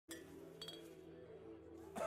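Faint background music of steady low tones, with a brief glassy clink that rings for a moment about half a second in.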